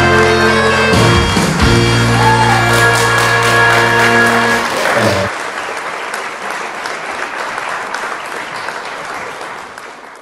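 The last bars of a Korean song's band backing track, with a strong steady bass, end about five seconds in. Audience applause comes in over the final notes and carries on alone, fading out at the end.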